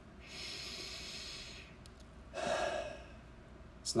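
A man breathing close to the microphone: a long, hissing breath, then a shorter, fuller breath about two and a half seconds in.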